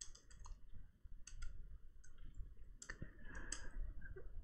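Computer keyboard keystrokes while code is typed: a quick run of clicks at the start, then a few single clicks spaced through the rest.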